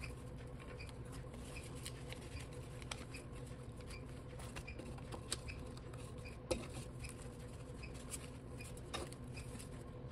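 Faint rustling and soft slaps of paper banknotes being handled and laid down in piles on a wooden table, with a few small taps over a steady low room hum.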